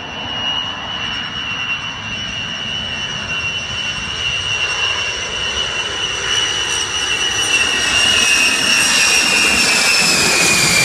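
Eight TF33 turbofan engines of a Boeing B-52H Stratofortress whining as the bomber comes in low on final approach, growing steadily louder. The high whine begins to drop in pitch near the end as the aircraft passes overhead.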